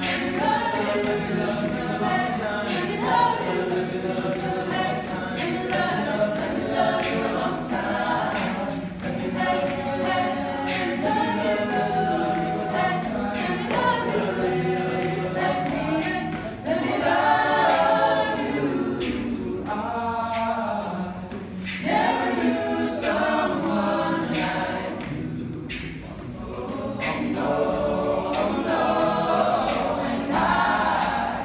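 A cappella group of mixed men's and women's voices singing a song in harmony, with no instruments.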